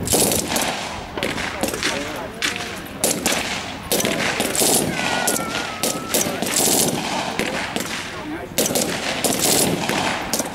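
Short bursts of blank automatic fire from a British Army L7 general purpose machine gun, about seven bursts with brief gaps, mixed with shots from the other prone soldiers' rifles.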